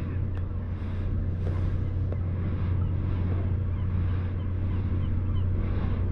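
A steady low-pitched hum of running machinery, unchanging throughout, over faint outdoor background noise.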